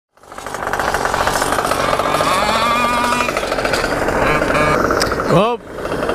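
Small two-stroke GoPed scooter engines running with a rapid, rattling beat, which dips away abruptly just before the end.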